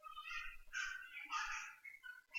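A few short, faint animal calls in the background, with no speech.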